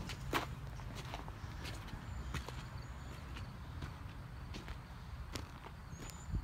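Footsteps on packed dirt: scattered soft crunches and clicks over a low steady rumble.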